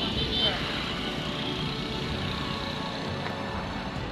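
Road traffic going by close at hand: motorcycles, cars and a lorry, a steady noise of engines.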